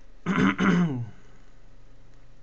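A man clears his throat in two quick pushes, starting about a quarter of a second in and over within a second.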